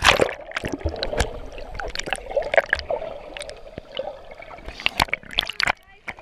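Seawater splashing as a handheld camera goes under, then muffled underwater sound: gurgling and bubbling with many short crackling clicks, and a few louder splashing bursts near the end.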